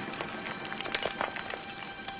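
Loose grit and small stones trickling and clattering down a rock face from under a boulder: a scatter of light ticks over a soft hiss, with faint sustained music notes under it.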